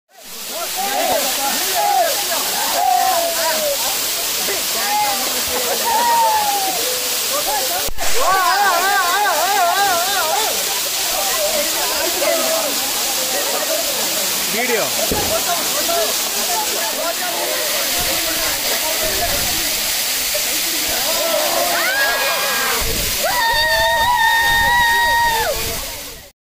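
A waterfall's water pouring down steadily onto rock and onto the people bathing under it, a loud rushing hiss. Several people's voices shout and call over the rush, with a long wavering call about a third of the way in and a long held call near the end.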